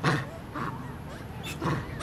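Long-tailed macaque giving two short, low grunts, one at the start and another near the end.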